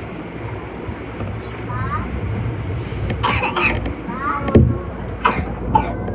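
Meitetsu 6500-series electric train pulling out of an underground station, a low running rumble heard from behind the cab. A few short, sharp noises come about halfway through and near the end.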